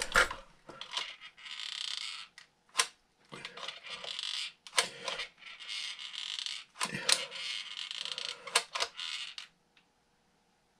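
Hot glue gun being squeezed again and again, a raspy creak each time the trigger pushes the glue stick through, with sharp clicks in between.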